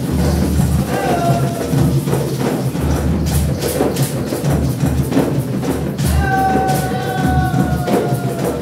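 Candomblé religious music: a large drum beaten with the bare hands in a steady rhythm, with other percussion and a singing voice. From about six seconds in, the voice holds one long note that slides slightly down.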